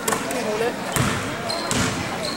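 A basketball hitting a hardwood gym floor: three sharp knocks roughly a second apart, among voices in the gym.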